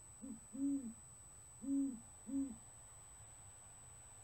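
Great horned owl hooting: a series of four low hoots, short, long, long, short, over about two and a half seconds.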